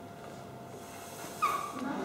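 A man blowing hard through a drinking straw into a plastic cup to push a balloon up: a sudden, short squeaky puff about one and a half seconds in, after faint room tone.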